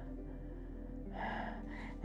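A woman's soft, breathy exhale about a second in, over quiet background music.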